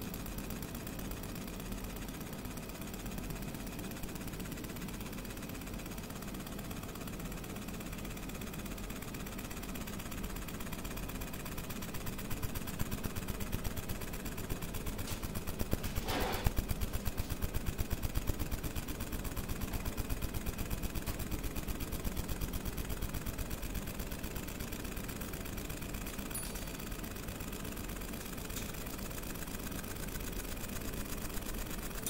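Fiber laser marker (JPT MOPA 50 W) engraving a photo into metal: a steady, very fast buzzing from the scanning head and the crackle of metal being burnt away, over a steady low hum. It grows louder in the middle, with one brief louder crackle about halfway through.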